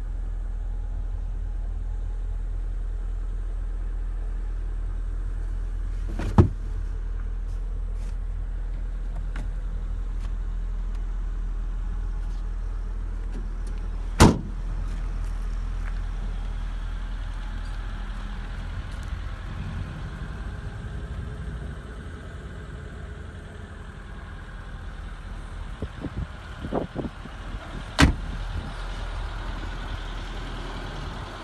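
Nissan Skyline's engine idling as a steady low rumble, with three sharp knocks, about six seconds in, about fourteen seconds in and near the end, and a few lighter clicks near the end as the car's panels and door are handled.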